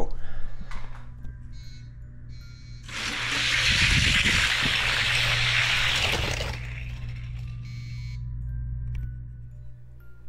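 Die-cast Hot Wheels cars running down an orange plastic drag-race track: a loud, even rushing rattle of wheels on plastic swells up about three seconds in and dies away by about six and a half seconds. Faint background music runs underneath.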